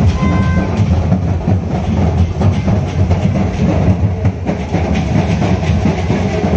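Loud festival din: the rumble of a large crowd with clattering percussion running through it.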